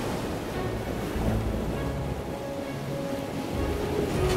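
Ocean waves rushing and washing in a steady swell, with background music underneath.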